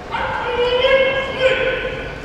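Sumo referee (gyoji) calling out to the wrestlers during a bout: one long, high-pitched call held for about a second and a half, swelling briefly near its end.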